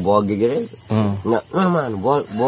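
Crickets chirping in a rapid, even pulse, heard faintly behind a man's louder speaking voice.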